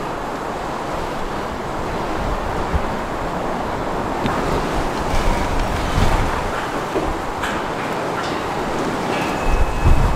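Wind buffeting the microphone over a steady outdoor rumble, with stronger low gusts about six seconds in and again near the end.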